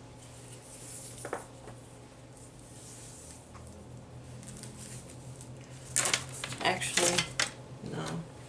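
Small hard tools clinking and clattering against a table: a single light tap about a second in, then a quick run of clinks near the end, over a steady low hum.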